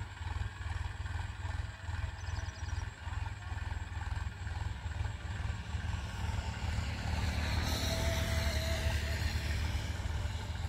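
Diesel tractor engine running steadily at work, pulling a nine-tine cultivator between sugarcane rows, heard from a distance as a low throb that grows a little louder in the last few seconds.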